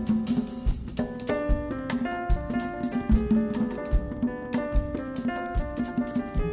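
Live jazz ensemble playing: grand piano notes and chords over a drum kit and hand drums (congas and Haitian vodou drum) keeping a busy, steady rhythm.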